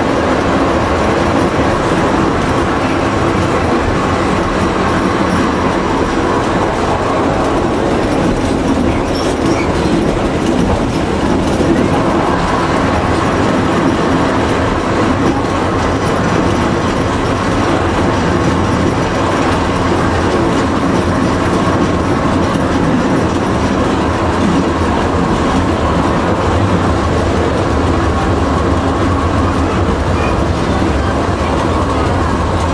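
Vintage motor railcar riding along the track, heard from inside its cab: a steady engine hum with the clickety-clack of the wheels over rail joints.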